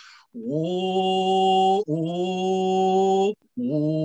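A man's voice singing a chant-like song, unaccompanied here: two long held notes, each sliding up into pitch, then a third note beginning near the end.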